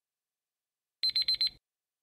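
Countdown-timer alarm sound effect: four quick, high-pitched electronic beeps about a second in, signalling that time is up.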